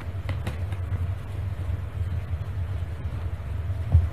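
Steady low background rumble, with a few faint clicks of tarot cards being handled and a single thump just before the end as cards are laid down on the table.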